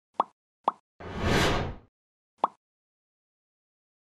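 Logo-sting sound effects: two quick pops, a loud whoosh about a second in that sinks in pitch as it fades, then a third pop.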